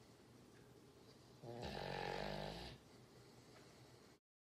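A sleeping Doberman snoring: a single snore about a second and a half in, lasting about a second.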